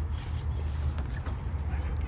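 Low steady background rumble with faint rustling, as a potted raspberry plant and its tag are handled close to the microphone.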